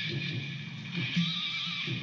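Rock band music: an electric guitar over a low, pulsing bass-and-drum rhythm, with a high-pitched wailing edge in the upper range.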